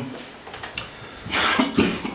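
Low room tone, then two short coughs about a second and a half in.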